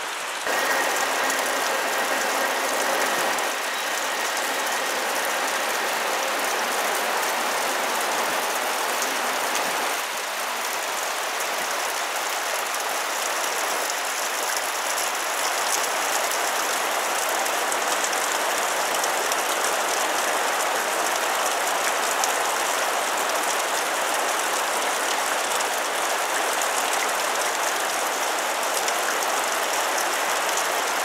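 Water falling and splashing down a gorge wall into the creek: a steady, even hiss with no pauses.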